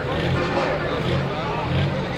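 Turbocharged diesel engine of a Light Pro Stock pulling tractor running at low revs with an uneven, pulsing throb. Voices can be heard in the background.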